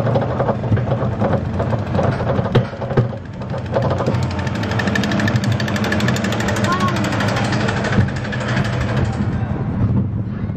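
Roller coaster car climbing its lift hill, heard from on board: a steady low mechanical drone with a fast, even rattle of clicks through the second half of the climb.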